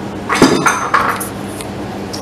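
A short clatter of hard objects knocking and rattling together, starting about half a second in and over within a second.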